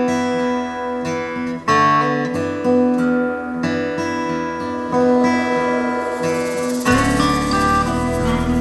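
A song's acoustic guitar intro played back over a pair of JBL floorstanding hi-fi speakers driven by an Onix A60 MkII integrated amplifier, heard in the room as a listening test of the amplifier. Plucked and strummed guitar chords ring out, and a fuller backing with bass comes in about seven seconds in.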